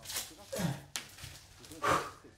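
A man's short, breathy vocal grunts, three of them, each falling in pitch, like straining or growling noises.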